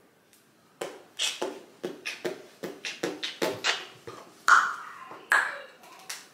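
A run of short, sharp clicks and taps, irregular at about two or three a second, starting about a second in.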